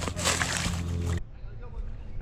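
Water splashing and sloshing at the pond's edge as a hooked bass is landed, over a steady low background, cutting off abruptly just over a second in and leaving faint outdoor background.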